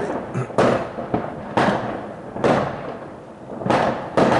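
Fireworks going off: a string of about five sharp bangs at uneven gaps of roughly half a second to a second, each trailing off in an echo.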